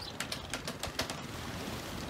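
Wooden handcart rattling as it is pushed along, a string of irregular light clicks and knocks, several a second.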